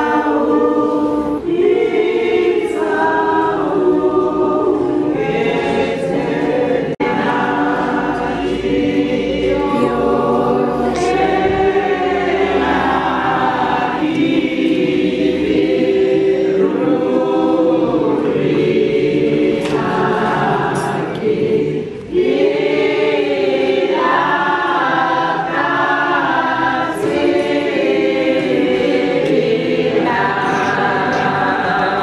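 Background gospel music: a choir singing, continuous, with a short break about three-quarters of the way through.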